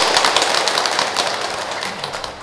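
Congregation applauding, the clapping slowly dying away.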